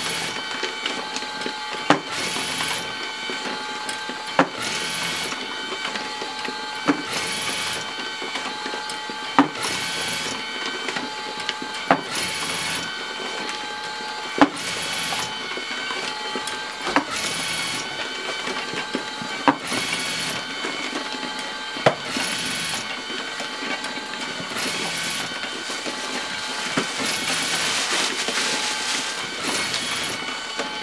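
LAB500 automatic labelling machine running with its feeder and conveyor belt: a steady motor whine, a sharp click about every two and a half seconds, once per coffee bag fed and labelled, and a brief swish between the clicks.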